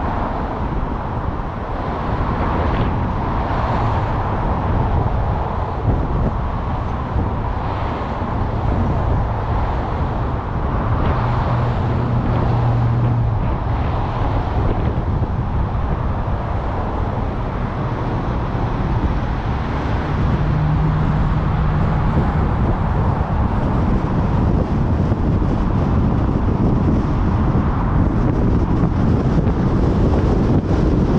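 Wind noise on the microphone over the road and traffic noise of a car creeping through heavy city traffic, getting somewhat louder about two-thirds of the way through as the car gets moving.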